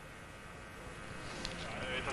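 Faint steady hiss of an open broadcast line, growing slightly louder toward the end.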